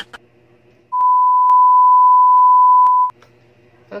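Censor bleep: a single steady 1 kHz pure tone lasting about two seconds, starting about a second in and cutting off abruptly.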